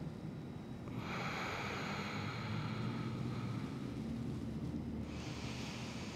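A person's slow, soft breathing: a long breath out starting about a second in and lasting about three seconds, then a shorter breath near the end, over a low steady room hum.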